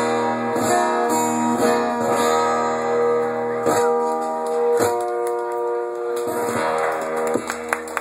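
Guitar playing slow strummed chords, each struck about once a second and left to ring: the closing bars of a song played live.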